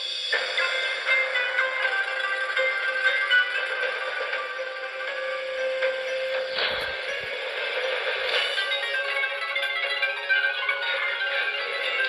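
Broadcast music playing through the small speaker of a Sanyo pocket AM/FM radio: sustained melodic tones, thin, with no bass.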